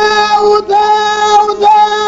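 A high voice sings long held notes, each one broken off briefly, about half a second in and again near the end.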